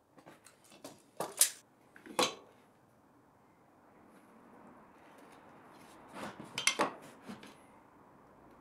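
Light clicks and knocks from marking tools being handled on pine boards: a tape measure set down, and a square laid on the timber with a pen marking against it. The sharp knocks come in two clusters, one in the first two seconds or so and another about six to seven seconds in.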